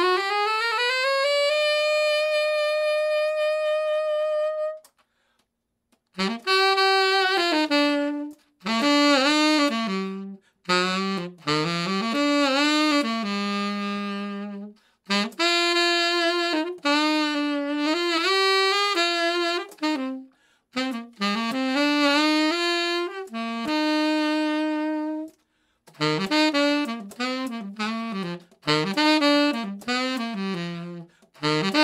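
Selmer Bundy tenor saxophone played solo. It opens with a smooth upward slide into a high note held for about three seconds. After a short pause it plays a melodic line in phrases broken by brief gaps.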